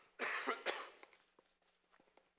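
A man coughing twice in quick succession, close to a clip-on lapel microphone.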